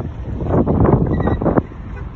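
Wind buffeting the microphone, a loud low rumbling noise that swells from about half a second to a second and a half in.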